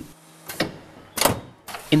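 Automatic steering-rack test bench positioning the rack: a faint steady motor hum, then two short mechanical noises, the louder one just over a second in.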